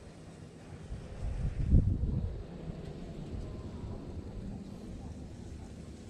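Wind buffeting the microphone outdoors: a steady low rumble with a stronger gust from about one to two and a half seconds in.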